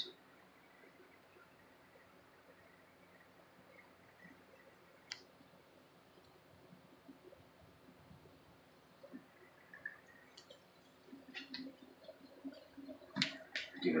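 Quiet room tone broken by a few faint clicks: one sharp click about five seconds in, scattered small clicks later, and a run of louder clicks and knocks near the end, from handling a plastic squeeze bottle of gasoline at a carburetor.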